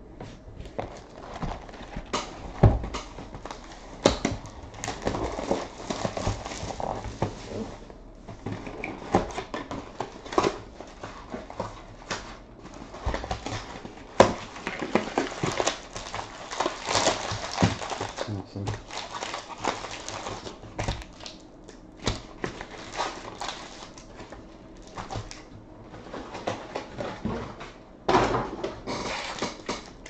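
Shiny foil-wrapped Bowman Jumbo baseball card packs rustling and crinkling as they are handled, lifted out of a cardboard box and stacked, with irregular taps and knocks throughout.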